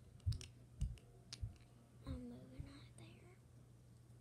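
Checker pieces tapping and clicking on a game board as they are moved and set down, about five sharp taps in the first second and a half.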